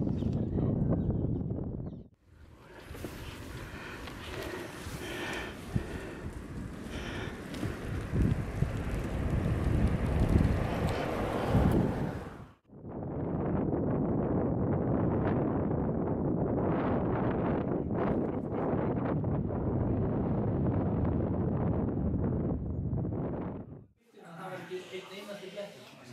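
Wind on the microphone outdoors, a steady rushing noise that breaks off abruptly twice, about two seconds in and about halfway through, as the shots change.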